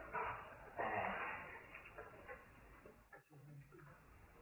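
Soft laughter, in bursts that die away over a few seconds.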